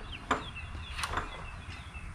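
A few light knocks and clicks of a metal tool being lifted off a shop shelf and handled, one about a third of a second in and two close together about a second in, with faint bird chirps in the background.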